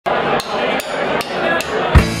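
Live rock band intro: sharp drum strikes about two and a half a second over a wash of electric guitar, landing on a loud downbeat at the very end as the full band comes in.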